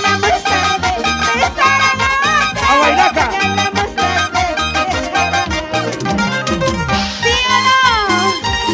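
Band music in a Latin dance style: a steady beat of bass notes under a wavering lead melody that plays without a break.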